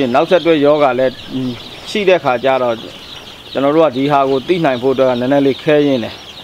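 A man talking in bursts with short pauses, over steady cheeping from a pen of young chicks.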